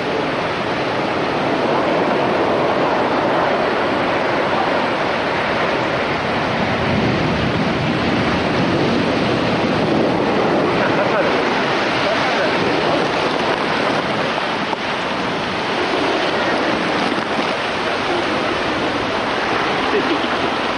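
Heavy storm-surge waves breaking and churning onto the shore: a continuous, loud noise of surf and rushing water.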